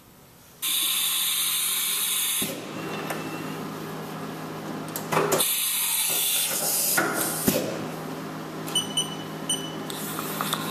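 Machine-shop noise: a loud hiss starts suddenly about half a second in and lasts about two seconds, over a steady machine hum that runs on. A few sharp knocks follow, then two short high beeps near the end.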